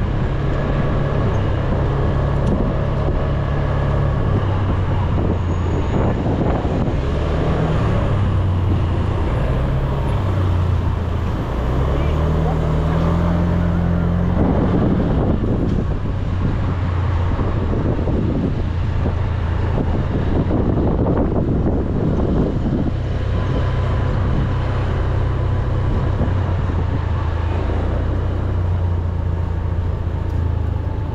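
Small Honda scooter's engine running under the rider, its pitch stepping up and down with the throttle and rising clearly as it accelerates about twelve seconds in, over steady wind and road noise.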